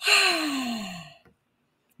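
A woman's long voiced sigh, breathy and falling steadily in pitch over about a second.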